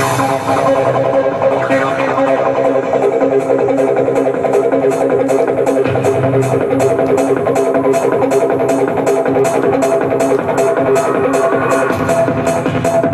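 A DJ mix of 90s electronic dance music with a steady techno-style beat. The bright treble drops away at the start, and a fast, even hi-hat pattern comes in about two seconds later.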